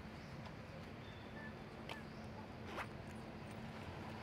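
Faint outdoor background: a steady low hum under a hiss, with two sharp clicks about two and three seconds in, the second the louder, and a few faint brief chirps.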